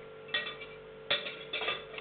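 Metal cutlery clinking twice, a knife knocking against a fork with a short bright ring each time, once about a third of a second in and again at about a second.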